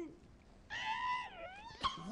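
A high-pitched comic wail of a voice, starting under a second in, held for about a second and then dipping in pitch, with a short sharp click just before the end.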